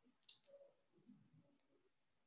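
Near silence, with one faint, sharp computer-mouse click about a third of a second in as the lecture slide is advanced, then faint low noises.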